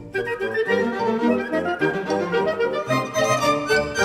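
Chamber orchestra with violins playing a fast, lively piece, many quick notes moving over a sustained accompaniment.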